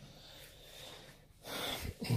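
A man's short, audible breath close to the microphone, about one and a half seconds in, after a quiet pause.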